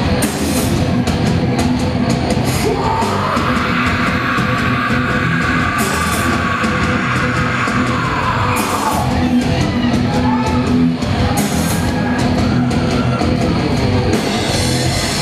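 Hardcore band playing live at full volume: distorted guitars, bass and drums, with a long screamed vocal held from a few seconds in until about nine seconds in, and cymbal crashes every few seconds.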